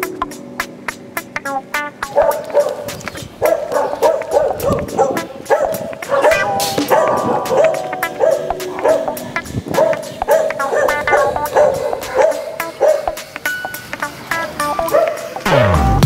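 A dog barking repeatedly, about two barks a second, over background music.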